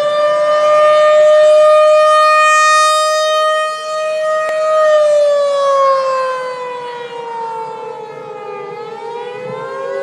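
Civil-defence warning siren wailing. Its pitch rises, holds steady for several seconds, then falls slowly. Near the end a new rise begins over the tail of the falling one.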